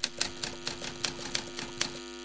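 Typewriter key clacks used as a sound effect for text being typed out on screen, about five strikes a second over a low steady tone.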